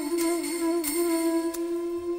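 Tamil film song, wordless interlude: one long hummed note held with slight wavers in pitch over soft accompaniment.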